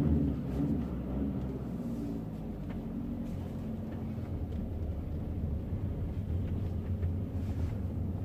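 Volkswagen Caddy 2.0 engine and road noise heard from inside the cabin as the van drives slowly, a steady low hum.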